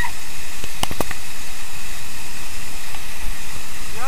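A waterfall pouring and splashing close by, a loud steady rush of water. A few sharp knocks come about a second in.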